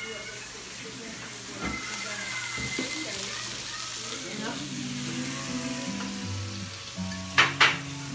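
Food sizzling steadily as it fries in hot oil. Two sharp clacks come close together near the end.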